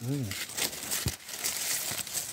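Bambusa bamboo leaves and dry culm sheaths rustling and crackling as a hand pushes through and handles the clump, irregular crisp crackles throughout.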